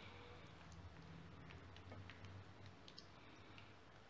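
Near silence: faint, scattered light ticks and clicks of a silicone spatula spreading béchamel over ragù in a metal baking pan, over a low steady hum.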